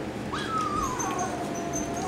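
Small dog whining: one long whine that starts about half a second in, jumps up briefly, then slides down in pitch and holds.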